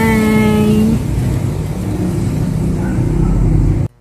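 A loud, steady low rumble, engine-like, that cuts off abruptly just before the end.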